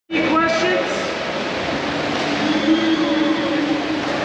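Voices in an indoor swimming pool hall over a steady, loud rushing background noise.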